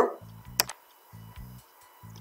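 Quiet background music with a repeating low bass pattern, and a single sharp mouse click about half a second in.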